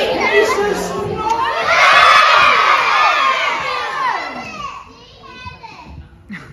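A crowd of schoolchildren shouting and cheering together in a large hall. The noise swells to its loudest about two seconds in, then dies down near the end.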